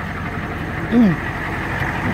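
A vehicle engine idling steadily with a low rumble, and a brief falling hesitation sound from a man's voice about a second in.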